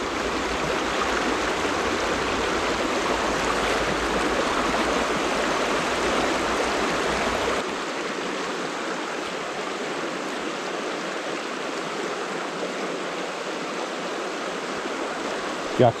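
Shallow stream riffle rushing steadily over stones, a constant hiss of moving water. A low rumble underneath drops away suddenly about halfway through.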